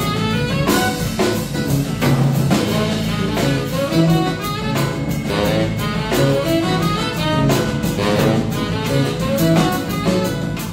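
Live band playing jazz-flavoured music: drum kit, saxophone, guitar and bass together.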